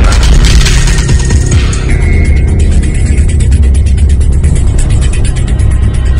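Loud dramatic music bridge with a heavy, pulsing bass, cutting in sharply as the dialogue ends: a scene-change cue in a radio drama.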